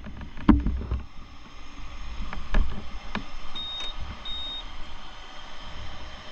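Motorcycle moving slowly, heard from its onboard camera: a low rumble with several short knocks and clunks, and two brief high beeps about halfway through.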